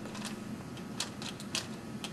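Handling noise: a few light, sharp clicks scattered over quiet room sound.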